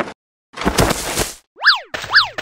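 Cartoon sound effects: a short rustling whoosh, then near the end a quick boing whose pitch sweeps up and straight back down.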